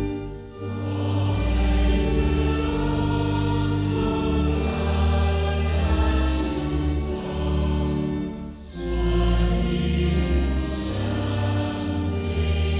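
Congregation singing a slow hymn in unison over organ accompaniment, with long held notes and a steady bass beneath. The sound drops briefly between lines, about half a second in and again near nine seconds.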